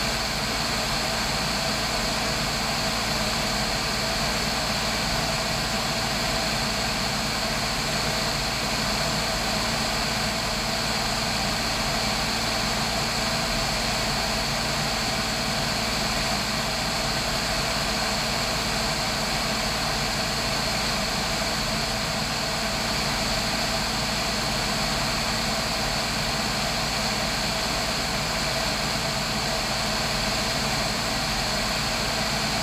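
Steady drone of a single-engine propeller airplane's piston engine in level cruise, heard from a camera mounted on the airframe, with rushing wind noise over it.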